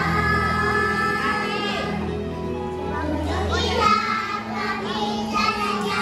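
Young children singing a song over instrumental backing music with held bass notes.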